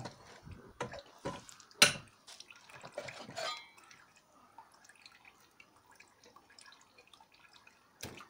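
Water dripping and squelching from wet paper pulp being squeezed in a homemade steel briquette press, with one sharp metal clank a little under two seconds in as the press is opened. Faint drips and ticks follow.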